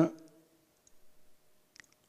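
Two faint computer mouse clicks, about a second apart, over a faint steady hum.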